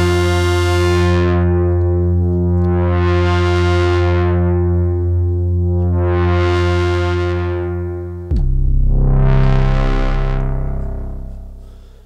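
Eurorack modular synthesizer tone: a sine wave shaped by the Klavis Flexshaper waveshaper, held as one sustained note whose overtones swell brighter and fade back about every three seconds. About eight seconds in, it jumps to a lower note, then fades out near the end.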